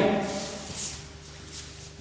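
Soft rustling and shuffling of bodies and clothing moving on a grappling mat, with one brief swish about a second in, over quiet room tone.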